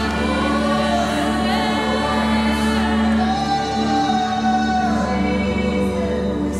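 Live gospel worship music: a female lead vocalist sings long, gliding notes while a room of voices sings along over a steady, held instrumental accompaniment.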